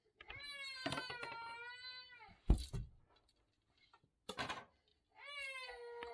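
Two long, drawn-out high-pitched calls with a wavering pitch, the first lasting about two seconds and the second starting near the end. Between them come a sharp knock and a fainter one.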